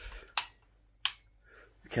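A wall light switch clicked twice, two sharp clicks under a second apart, in a small echoing room.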